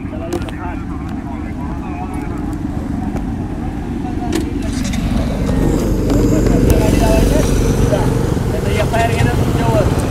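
Street traffic with motorcycle and scooter engines running close by, the rumble growing louder about halfway through. Indistinct voices are heard over it.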